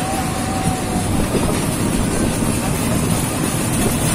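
Small roller coaster train running along its steel track: a steady rumble and clatter of the wheels on the rails, heard from a car of the moving train.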